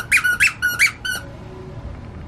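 Plush squeaky chicken dog toy squeezed under a foot: three quick high squeaks, each sliding up and back down, in about the first second.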